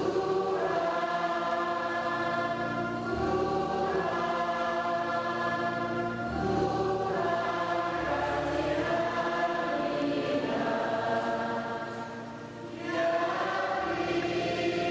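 A choir singing a slow hymn in long held notes, with a short break between phrases near the end.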